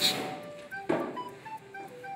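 Background music: a light melody of short single notes moving between pitches, with one sharp click about a second in.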